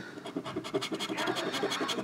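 A scratch-off lottery ticket's coating being scraped off with a tool in quick, repeated strokes, uncovering a winning number.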